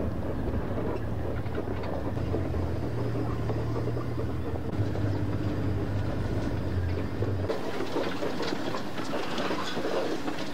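Open safari vehicle driving over a rough dirt track: a steady engine drone under constant rattling of the body and fittings. The low engine hum drops away about seven seconds in while the rattling goes on.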